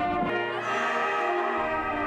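Marching band brass section playing, holding a sustained chord of several notes.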